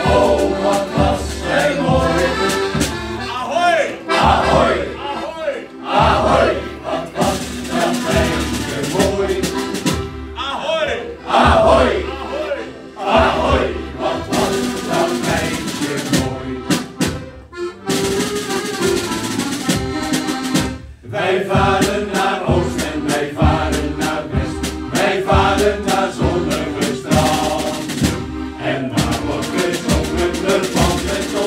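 Men's shanty choir singing a song together to accordion accompaniment.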